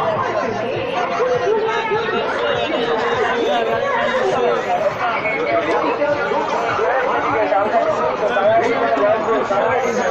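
Crowd chatter: many people talking at once in a busy throng, steady throughout.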